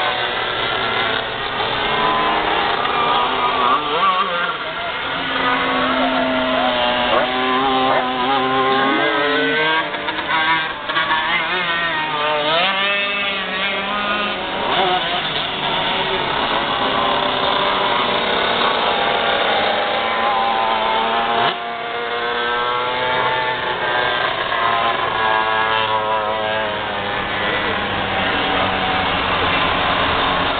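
Several 125cc two-stroke shifter cage kart engines racing together, their pitch rising and falling as the drivers rev up the straights and back off into the turns, with one steep climb in pitch about halfway through.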